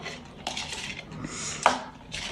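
Metal spoon scraping and clinking inside a tub of spread, a run of short scrapes with a sharper knock about one and a half seconds in.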